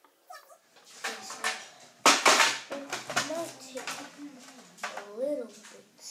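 A child's voice making wordless vocal sounds, with a loud breathy rush of noise about two seconds in.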